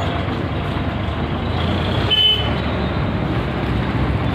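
A vehicle engine running steadily, with a brief high toot about two seconds in.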